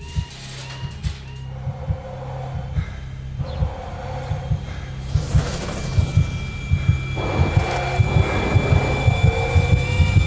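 Tense film sound design: low heartbeat-like thumps under a swelling drone that grows steadily louder, with a thin high steady tone coming in about six seconds in.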